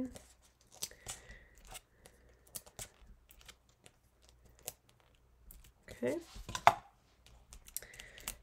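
Faint, scattered ticks and tearing rustles of release backers being peeled off small foam adhesive dimensionals and pressed onto a cardstock panel.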